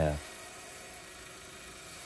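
Lapidary trim saw running steadily as a rock is fed into its wet blade to cut it in half: a faint, even hum and hiss.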